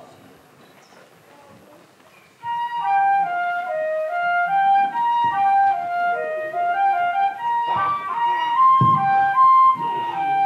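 After about two seconds of near-quiet room, a solo flute plays a short melody: one line of held notes that steps down and then climbs back up.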